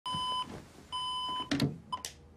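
Digital alarm clock beeping: two long electronic beeps about half a second apart, then a brief rustle of bedding. A third beep is cut short near the end as the alarm is switched off.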